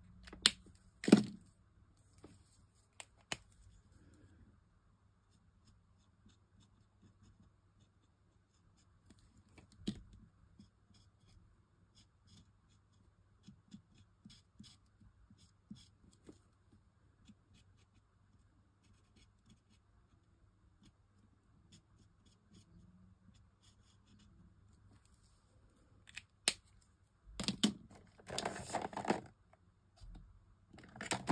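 Alcohol marker cap pulled off with a couple of sharp clicks at the start, then faint scratching of the marker nib colouring on card, with a few more clicks as pens are handled. Near the end, a louder rustle of card being moved and pressed down.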